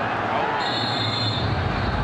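Steady stadium crowd noise from a packed football ground. A short, steady high-pitched tone sounds over it near the middle, lasting under a second.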